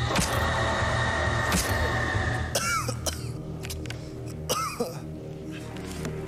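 Tense film score: a steady low drone under a high held tone that stops about halfway through. A few sharp clicks and two short gliding sounds break in during the second half.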